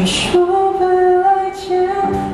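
A woman singing a Mandopop ballad into a microphone, holding two long notes with a short break between them.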